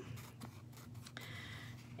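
Scissors cutting through a sheet of craft foam: a faint, scratchy slicing that becomes steadier about a second in.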